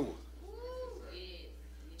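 A faint, high-pitched voice call in the room, rising then falling in pitch, over a steady low electrical hum.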